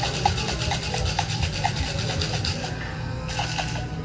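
Ice rattling hard in a metal-tin-and-glass cocktail shaker being shaken vigorously, in a fast even rhythm of several strokes a second, with a short pause near the end.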